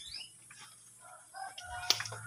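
Faint bird chirps: two short falling high chirps at the start, quieter scattered calls later, and one sharp click just before the end.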